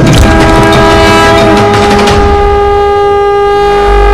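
Conch shell (shankh) blown in one long, loud, steady note over soundtrack music.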